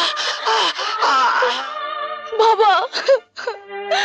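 Anguished human wailing and moaning cries, loud and sliding in pitch, in a death scene with blood at the mouth. Dramatic film-score music with long held notes takes over in the second half.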